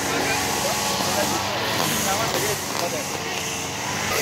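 Steady traffic noise with faint voices of people in the background.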